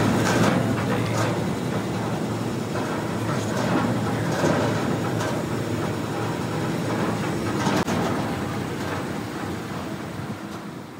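Trommel screen running empty: its steel barrel turning on red-treaded rollers driven by an electric motor, a steady mechanical rumble with a low hum and a few light clicks and knocks.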